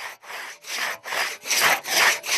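Hand saw cutting through wood in quick, even back-and-forth strokes, a little over two a second, growing louder as it goes.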